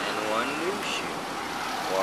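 Steady background road-traffic noise, with a short spoken phrase in the first second.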